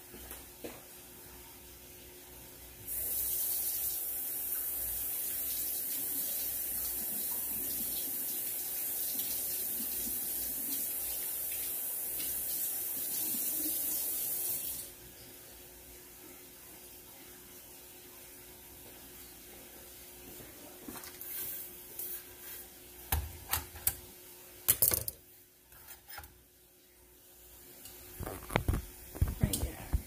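Kitchen faucet running steadily for about twelve seconds as a bell pepper is rinsed under it, then shut off. A few scattered knocks and handling sounds follow near the end.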